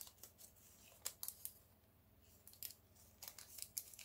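Faint scattered clicks and light rustles from small jewelry pieces and packaging being handled on a tabletop.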